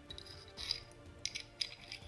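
A few short metallic clicks and light rattles from the steel slide and barrel of a field-stripped Star DKL pistol as the parts are handled, over quiet background music.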